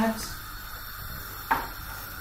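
A single sharp knock of a kitchen knife on a wooden chopping board about one and a half seconds in, over a low, steady kitchen background.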